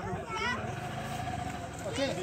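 People's voices talking and calling, one voice briefly holding a steady note, over a steady low rumble.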